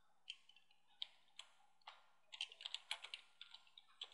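Faint computer keyboard typing: a few scattered keystrokes, then a quick run of them in the second half.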